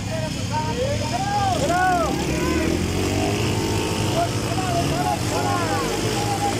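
Motorcycle engines running with a steady low rumble, under a crowd shouting and whooping in repeated rising-and-falling calls.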